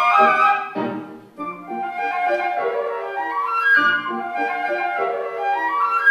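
Two concert flutes playing a duet, a flowing passage of quick running notes with a brief drop in loudness a little over a second in.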